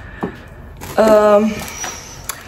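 Soft rustling of a non-woven fabric shopping bag and a cardboard snack box as they are handled, with a short vocal sound about a second in.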